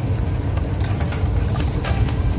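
Flat stir stick scraping and tapping in a metal can of mixed paint, with faint short clicks, over a loud steady low rumble like a running machine.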